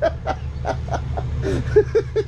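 Men laughing: a run of short, evenly spaced laughs, about five a second, building in the second half, over a steady low hum.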